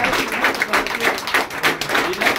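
Scattered hand clapping from a club audience, with voices mixed in.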